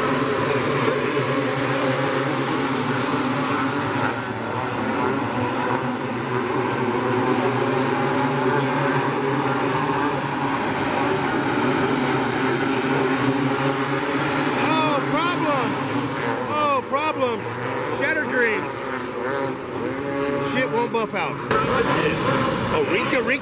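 A pack of winged outlaw dirt karts racing on a dirt oval, several small engines running hard together. From about 14 s on, the pitch swoops up and down as karts pass close by.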